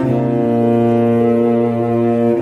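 Instrumental cello music: low bowed cello notes held long, with several pitches sounding together, changing notes right at the start and again just after the end.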